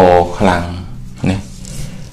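A man speaking Khmer, one drawn-out syllable at the start, then a short phrase with pauses. A steady low hum sits underneath.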